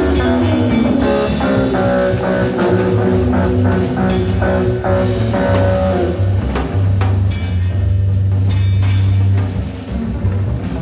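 Live free-jazz trio of electric guitar, electric contrabass and drums playing together. A busy run of notes over the drums gives way, about seven seconds in, to a low note held for a couple of seconds, which falls away near the end.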